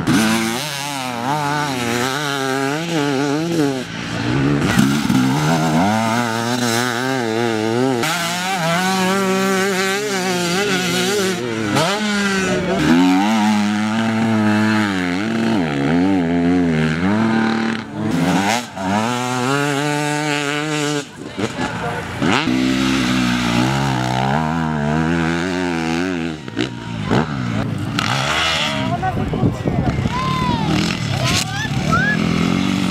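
Enduro motorcycles revving hard one after another on a dirt course. The engine pitch climbs and drops quickly with throttle and gear changes, and the sound breaks off and changes abruptly several times as one bike gives way to the next.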